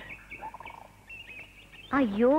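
Faint, high-pitched bird chirps in a film's outdoor ambience.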